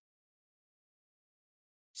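Near silence: a pause in the narration with no audible sound.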